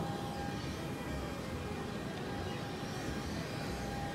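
Steady street background with a low traffic rumble and a faint steady hum-like tone throughout.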